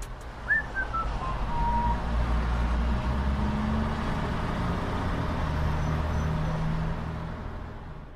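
A steady vehicle-like rumble and hiss, with a short falling whistle about half a second in, fading out near the end.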